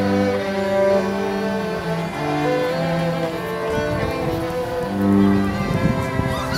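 Slow bowed string music, cello and violin playing a melody in held notes.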